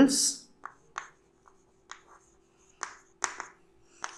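Chalk writing on a blackboard: a handful of short, separate taps and scratches as letters are written. A faint steady hum lies underneath.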